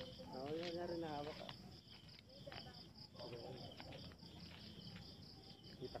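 Crickets chirping in a steady, fast, evenly repeating pulse, with the odd faint crackle from a burning wood bonfire.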